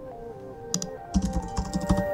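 Computer keyboard typing sound effect: a couple of key clicks, then a quick run of clicks from about a second in, as a search phrase is typed. Soft background music with held tones plays underneath.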